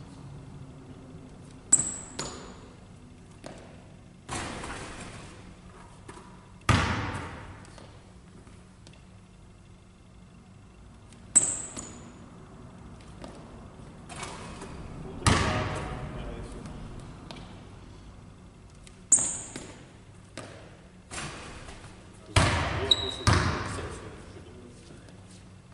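A basketball bouncing and thudding on a hardwood gym floor, with sharp sneaker squeaks, all echoing in a large sports hall. The thuds come at intervals of several seconds and are the loudest sounds; three squeaks fall in between.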